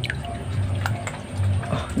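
Water splashing and dripping in a plastic tub as an otter lunges and paddles after live fish, with background music underneath.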